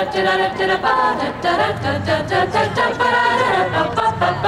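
A group of voices singing a cappella, several lines sounding together.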